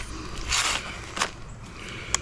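Handling noise from a cordless pole saw's plastic extension pole being taken apart: a short scrape about half a second in, then a sharp click a little after one second.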